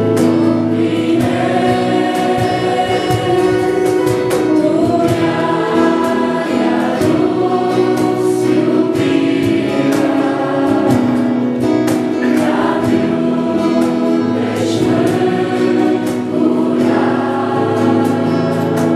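Two girls singing a Christian song in Romanian as a duet into handheld microphones.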